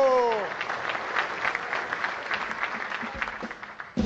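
A large audience of soldiers applauding, the clapping thinning and fading toward the end. In the first half second a shouted final word of a slogan dies away over it.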